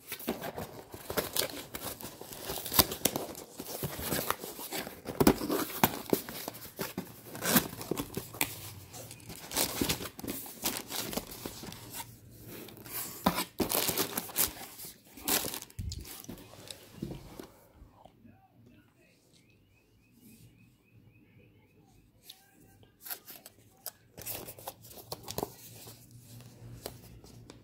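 A cardboard box and the packaging inside it handled and opened: busy rustling, scraping, tearing and crinkling of cardboard and wrapping, which dies down to quieter handling about two-thirds of the way through.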